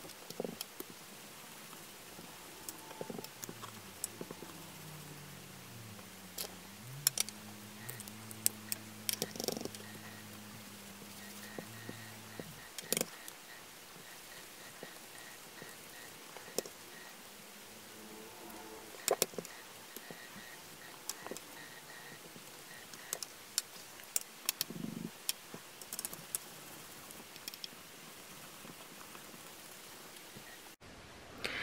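Faint scattered taps and clicks of a foam ink blending tool and Distress Ink pads being handled while ink is worked around the edges of a planner page, over quiet room noise. A low hum slides in pitch and then holds steady from about 3 to 12 seconds.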